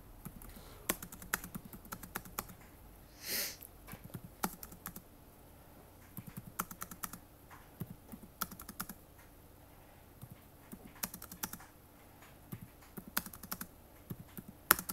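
Computer keyboard typing: short groups of keystroke clicks separated by pauses, as numbers are entered a few digits at a time.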